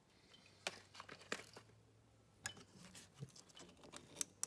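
Faint, scattered clicks and rustles of hands handling hoses and plastic fittings in an engine bay, over a low hum.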